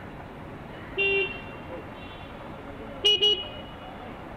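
Vehicle horn honking in traffic: one short blast about a second in, then two quick toots near the end, over steady road noise.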